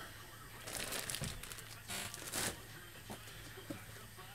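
Clear plastic bag around a jersey crinkling as it is handled, in two short spells of rustling about a second and two seconds in.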